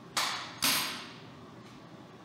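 Two sharp hammer blows on metal about half a second apart, the second louder, each dying away quickly.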